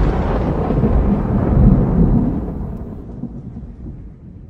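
A long, low rumble with no musical notes, like rolling thunder, that dies away over the last two seconds.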